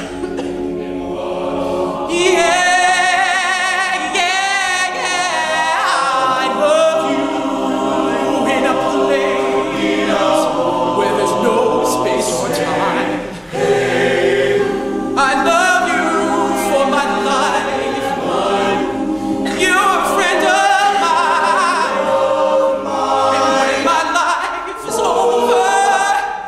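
Male a cappella group singing a slow ballad in close harmony, holding long chords without words, with one voice sliding and wavering above them in the first few seconds. The sound dips briefly about halfway through and again near the end.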